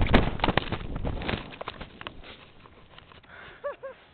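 A person's fall in the snow: a jumble of knocks and scraping snow as they tumble, dying away over about two seconds as they come to rest. Two short vocal sounds follow near the end.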